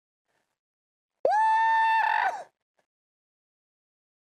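A man's high falsetto shriek of shock, muffled behind his hands, held on one pitch for about a second with a quick scoop up at the start and a wavering fall-off at the end.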